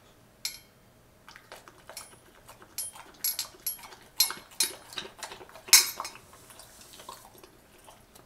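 Boxer dog lapping water from a stainless steel bowl, its tongue and muzzle knocking the metal in a string of sharp, irregular clinks, about two a second at their busiest, with the loudest clink just before the end.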